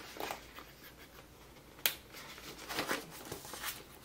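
Paper planner pages being handled and fitted onto a discbound planner's metal discs: soft rustling with small clicks, and one sharp click about two seconds in.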